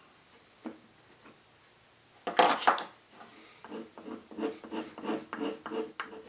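Metal hand tools working on mahogany: side cutters gripping and levering at an old nail, with one short, sharp scrape about two seconds in. Then a steel blade scrapes residue off the wood in short, quick strokes, about three a second.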